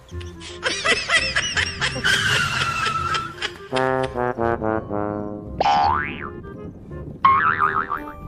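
Cartoon comedy sound effects over background music: a wobbling boing, a long falling glide, a run of tones stepping downward, a quick rising sweep, then a warbling boing near the end.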